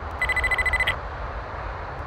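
A brief ringing trill, a fast-pulsing bell-like tone lasting well under a second near the start, then a low steady rumble.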